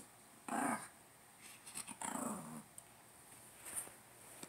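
A Shih Tzu vocalizing twice: a short sound about half a second in, then a longer growling whine about two seconds in that falls in pitch. It is asking for a tennis ball it cannot reach.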